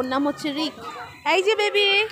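Speech and a young child's voice, with one drawn-out high-pitched call in the second half.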